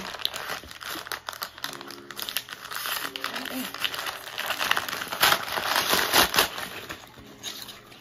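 Packaging crinkling and tearing as a mailer package is opened by hand: irregular rustling and crackling, loudest about five to six and a half seconds in.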